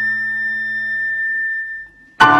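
Concert flute holding one long, steady high note at the close of a section, over a soft sustained piano chord that dies away about halfway through. The flute note fades near the end.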